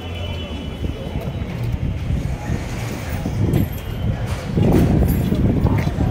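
Indistinct background voices and bustle with handheld-camera handling noise, getting louder about four and a half seconds in.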